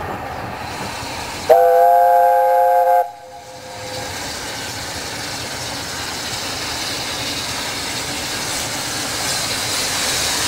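A small narrow-gauge steam locomotive sounds its steam whistle once, a chord of several tones about a second and a half long that starts about one and a half seconds in and cuts off abruptly. Afterwards the engine's steady hiss and exhaust noise grows louder as it approaches.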